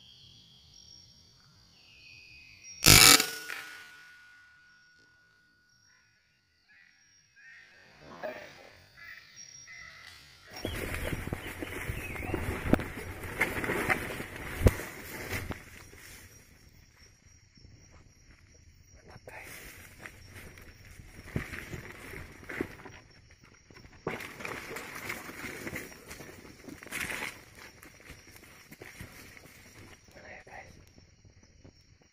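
A single sharp rifle shot about three seconds in, the loudest sound here, fired up into the trees at a roosting junglefowl. From about ten seconds on come heavy rustling of leaves and brush and footsteps pushing through undergrowth, over a faint steady high insect chirping.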